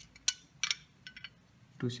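A few small metallic clicks as a screw is fitted through a BO gear motor's mounting hole against a metal robot chassis plate: one sharp click near the start, a second shortly after, then a few faint ticks.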